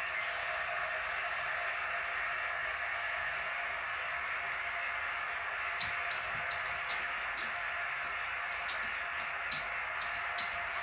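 Steady hiss of an old recording playing through a small speaker, with scattered crackles from about six seconds in and little clear music standing out.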